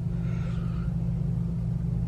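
Steady low hum with a faint rumble beneath it, unchanging throughout; the room's background noise with no speech over it.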